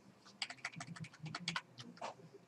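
Computer keyboard keys pressed in a quick run of about a dozen clicks, as text is selected in a code editor.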